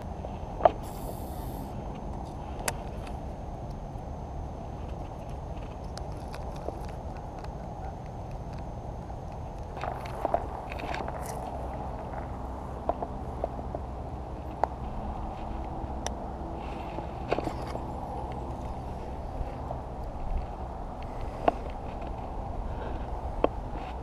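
Steady low outdoor rumble on the camera microphone, with scattered small clicks and taps from handling a baitcasting rod and reel while fishing a spinnerbait. A thin steady high tone runs through the first half.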